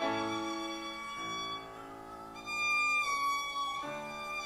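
Live instrumental church music: a slow melody of held, sustained notes over accompaniment, with a louder high note a little past halfway.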